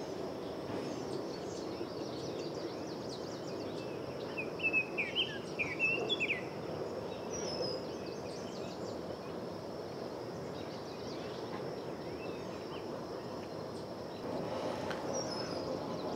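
Steady outdoor background noise with a small bird chirping a quick run of short calls about four to six seconds in, and a few higher chirps just after.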